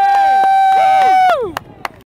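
A spectator's long, high cheering shout held on one note, which falls in pitch and stops about a second and a half in. Fainter voices and a few sharp clicks sound under it.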